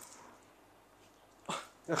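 A handful of six-sided dice thrown by hand onto a gaming mat, landing in a short clatter about one and a half seconds in, with a second brief clatter just before the end.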